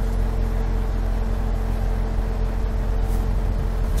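A car engine idling: a steady low hum with one constant tone.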